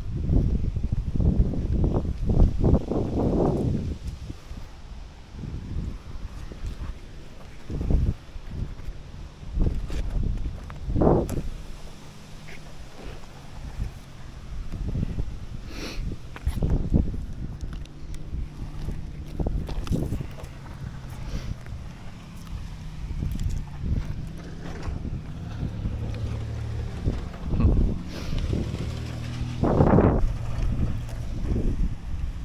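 Wind rumbling on the microphone of a body-worn action camera, with irregular bumps, rubbing and knocks as a climber's body, clothing and hands move against tree bark while climbing down a trunk.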